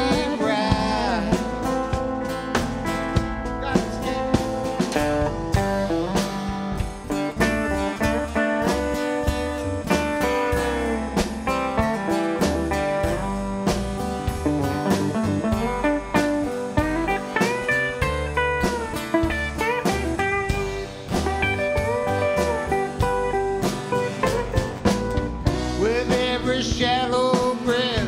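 Live band playing an instrumental break in a country-blues song, with electric and acoustic guitars and a lead guitar line that bends its notes.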